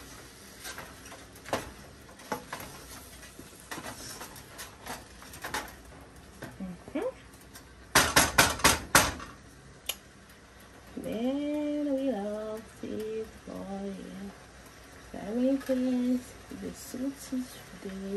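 Wooden spatula stirring meat and vegetables in a nonstick pot: scattered clicks and scrapes, then a quick run of about six sharp knocks against the pot about eight seconds in, the loudest sound. A woman's voice hums or speaks softly without clear words in the second half.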